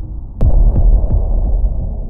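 A sharp hit about half a second in, followed by a deep booming rumble that slowly dies away: a cinematic impact sound effect for a logo reveal.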